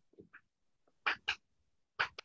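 Chalk writing on a blackboard: a few short strokes and taps, with two louder ones a little past one second in.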